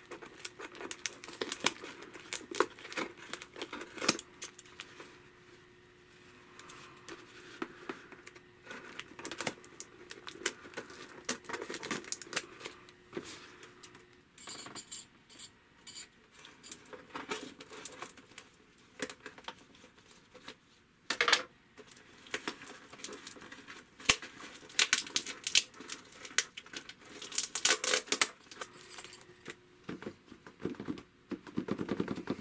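Scissors snipping and slicing through clear packing tape on a cardboard box, with the tape tearing and the cardboard crackling and rustling as the box is worked open. Irregular snips and crackles come in clusters, with a quieter stretch around six seconds in.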